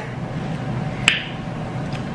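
A single short, sharp click about a second in, over a steady low room background.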